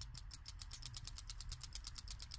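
BMW N54 VANOS oil-feed check valve shaken by hand, its internal valve rattling in quick light clicks, about ten a second. The valve had been stuck and now moves freely, which the owner thinks means it was grimed up and has finally come loose.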